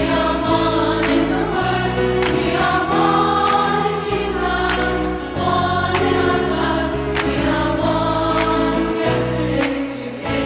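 Background music: a choir singing a slow sacred piece in held chords that shift every second or so.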